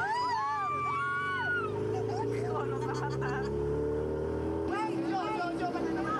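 A motor vehicle's engine running steadily with a low hum, growing a little louder and then cutting off abruptly about three-quarters of the way through, with high voices calling out over it at the start and chatter after it stops.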